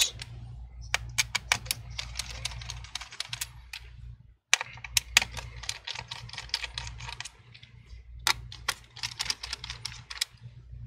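Phillips screwdriver backing out the small metal screws that hold the battery in a laptop: quick, irregular clicks and ticks, several a second, with a brief break a little over four seconds in.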